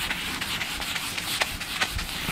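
A hand-held whiteboard eraser wiping across a whiteboard in repeated dry, rubbing strokes, with a couple of light clicks in the second half.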